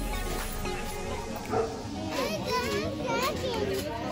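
Several children's voices calling out and chattering at once while they play, over music in the background.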